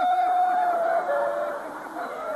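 A person's voice holding one long, drawn-out note for about a second, then trailing off into softer vocal sounds.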